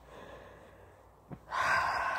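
A person's breathy sigh near the end, after a quiet pause broken by one short click.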